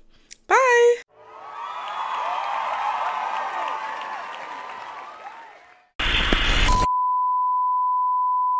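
Crowd cheering and applauding, swelling and then fading away. About six seconds in, a sudden loud burst of TV static cuts to a steady test-pattern beep, one held tone.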